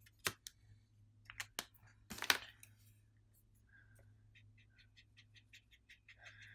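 Faint clicks and taps of a brush marker and paintbrush being worked against a plastic palette and watercolor paper. A few sharp clicks come in the first couple of seconds, the loudest about two seconds in, then a quick run of light ticks near the end.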